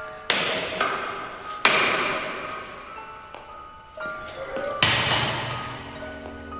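A metal bar smashing into factory machinery three times, each blow a sharp metallic crash that rings out and fades, over a soft musical score.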